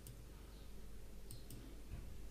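Faint clicks of a computer mouse, one near the start and two close together about a second and a half in, as the presentation slide is advanced. A faint steady low hum lies under them.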